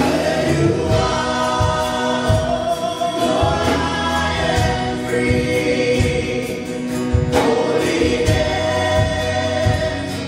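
Live church worship band playing a slow song, several voices singing together over acoustic and electric guitars, keyboard and drums, with a steady drum beat.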